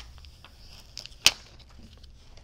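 Sheets of heat transfer vinyl on their clear plastic carriers being lifted and shifted by hand: a light rustle with a click at the start, then one sharp snap a little over a second in.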